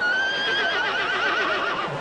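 A horse whinnying: one high call of nearly two seconds that starts abruptly, falls slightly in pitch and breaks into a fast quavering wobble before it fades near the end.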